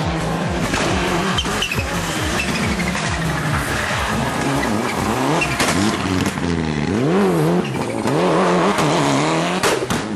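Rally car engines revving hard, their pitch climbing and dropping again and again through quick gear changes and lifts. The revving swings up and down fastest in the second half.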